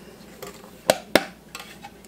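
Two sharp clinks about a quarter second apart on a stainless steel stand-mixer bowl as flour is tipped in from a glass bowl, with the mixer switched off.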